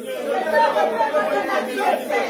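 Many voices praying aloud at once, overlapping into an indistinct babble of speech with no single voice standing out.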